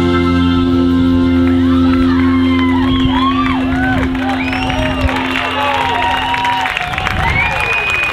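A live blues band holds the final chord of a song, and it rings until it stops near the end. Over it the audience cheers and whoops, starting about two seconds in.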